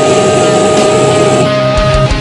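Screamo band's recorded song: distorted electric guitars and drums in an instrumental passage, with one long held note over them.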